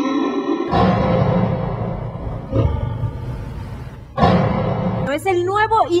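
Loud show music with a crowd shouting and cheering over it, starting suddenly, with a second loud surge about four seconds in and a voice speaking near the end.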